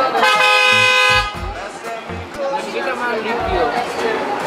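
A single horn toot, one steady held note lasting about a second near the start, followed by people talking.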